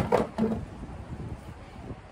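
A spoken word trails off in the first half second, then only a faint, steady background hiss remains with no distinct event.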